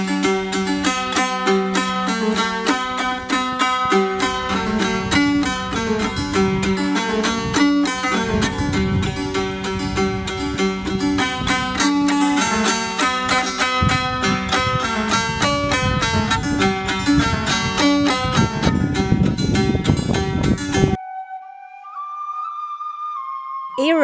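Nares-jux, a long plucked wooden board zither, played in a fast stream of plucked notes over a steady low note. The music cuts off suddenly about three seconds before the end, and a quieter flute-like tone follows.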